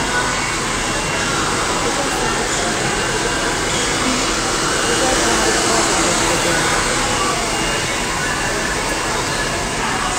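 Handheld hair dryer running steadily, blowing loose clippings off the neck after a buzz cut.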